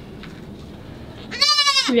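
A goat gives one short, high-pitched bleat about a second and a half in.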